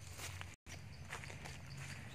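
Footsteps crunching on dry fallen leaves, several irregular steps. The sound cuts out completely for an instant just over half a second in.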